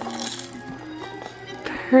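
A baby's electronic musical toy sounding a few plain held notes, with a short plastic clatter at the start as it is handled.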